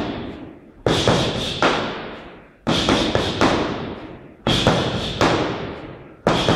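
Punches and kicks landing on foam training sticks: loud thuds in pairs, a new pair about every two seconds, each trailing off slowly.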